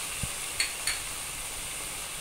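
Vegetables sizzling steadily in a frying pan, with a soft knock about a quarter second in and two faint clicks shortly after.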